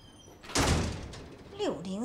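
A front door being pushed shut: one heavy thump about half a second in, dying away over about a second.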